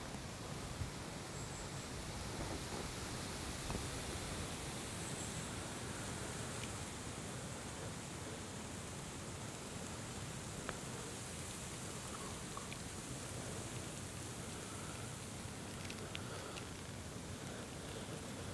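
Steady, even hiss of outdoor background noise, like a breeze rustling dry grass and leaves, with a few faint ticks scattered through it.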